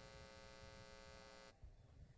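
Near silence with a faint, steady electrical mains hum of many even tones, which cuts off abruptly about one and a half seconds in.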